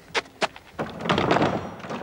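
A locked panelled door being tried: the knob clicks sharply twice, then the door rattles against its lock for about a second.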